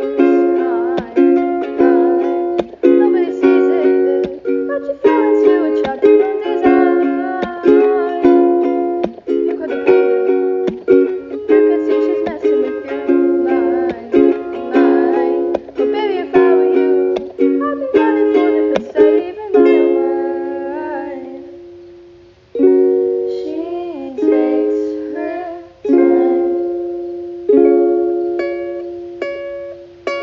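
Instrumental music of plucked-string chords, bright and without bass. About twenty seconds in, one chord rings out and fades before the playing resumes.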